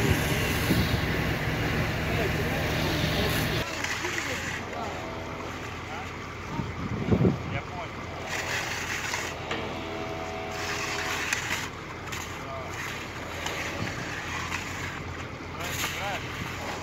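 A fire hose's water jet hissing over pavement with a steady motor hum underneath, which stops abruptly after about four seconds. Then quieter scraping of shovels through flood mud on stone paving, with faint voices in the background.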